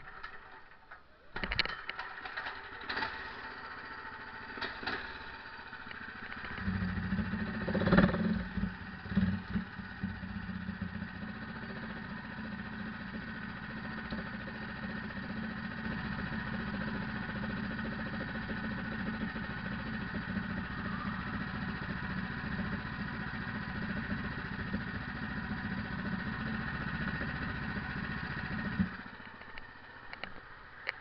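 A few knocks, then a go-kart engine starting about seven seconds in, with loud knocks as it catches. It runs steadily at idle and cuts off suddenly near the end.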